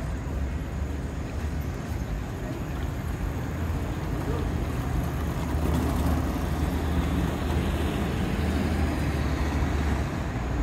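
City street traffic at an intersection: cars idling and moving off, a steady low rumble that gets a little louder about halfway through.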